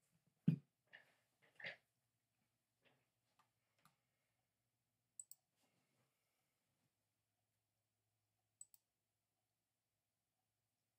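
Sparse small clicks and knocks against near silence: a dull knock about half a second in, a few softer knocks over the next few seconds, then two quick sharp double clicks, one about five seconds in and one near the end.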